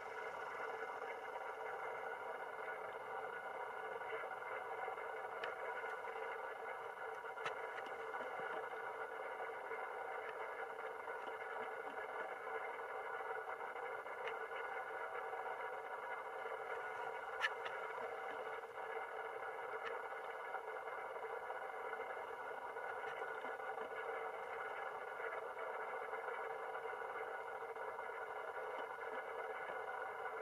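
A steady, unchanging hum of several held tones, with a few faint clicks; no elk bugle is heard.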